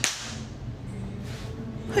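A single sharp crack right at the start that fades quickly, over a low steady hum.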